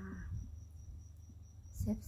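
A faint, steady, high thin trill, insect-like, over a low hum. A woman's speech trails off just after the start and a word begins near the end.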